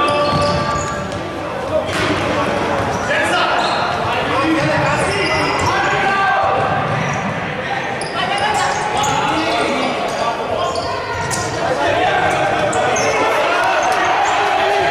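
Indoor futsal play in a reverberant sports hall: players' and spectators' shouts and calls, with a few sharp knocks of the ball being kicked and bouncing on the wooden court.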